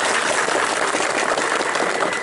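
A crowd applauding, a steady dense run of hand claps.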